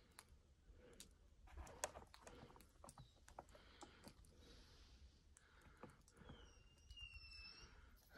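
Near silence with scattered faint light clicks and a faint thin whistle-like tone near the end.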